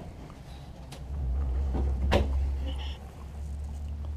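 Wooden cabinet doors being opened and shut, with two sharp clicks about one and two seconds in, over a low rumble that swells in the middle.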